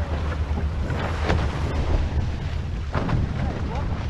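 Wind buffeting the microphone on a sailing catamaran, over a steady rush of water past the hulls, with two louder rushes about a second in and at three seconds.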